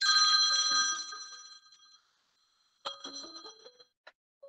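Google Voice incoming-call ringtone ringing on the computer: a bright bell-like chime with a short run of notes, fading over about a second and a half, then sounding again, more softly, about three seconds in.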